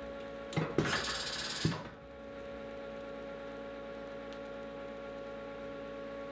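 Haas vertical mill spindle taking a CAT40 tool holder: a knock as the holder is pushed into the spindle, about a second of air hissing from the spindle while the tool release is held, then a clunk as the tool is clamped. After that the machine hums steadily.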